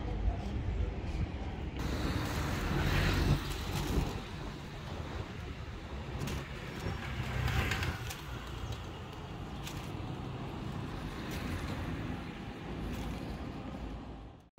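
Street traffic: a steady low rumble of road noise, with vehicles passing that swell up about three seconds in and again near eight seconds.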